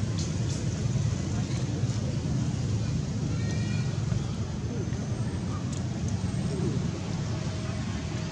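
Steady low outdoor rumble, like traffic or wind, with a short high-pitched call about three and a half seconds in.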